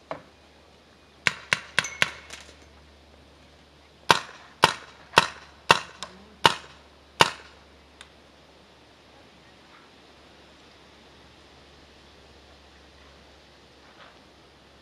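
Paintball marker firing: a quick group of four sharp pops about a second and a half in, then six louder shots about half a second apart between four and seven seconds in.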